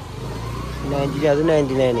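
Low, steady hum of a motor vehicle engine for about the first second, under a person's voice that starts about a second in.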